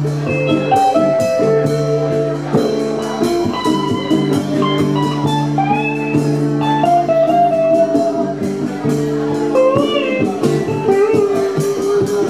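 Live band playing an instrumental break: an amplified guitar playing a lead line of held notes, some of them bent, over rhythm guitar and a hand drum struck in a steady beat. It is heard from right under the PA speaker, so the sound is a little off.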